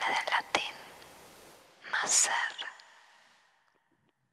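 Whispering voice on a film soundtrack: two short, breathy whispered phrases, one at the start and one about two seconds in, each trailing off in an echo, fading out near the end.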